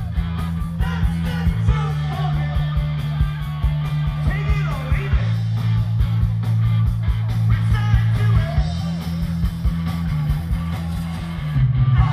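Live punk rock band playing loudly: electric guitars, bass guitar and drums, with a driving beat and a bass line that moves between notes every second or two.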